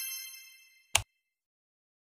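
A bright, high chime sound effect fading out, then a single short click about a second in, as of an animated button being pressed.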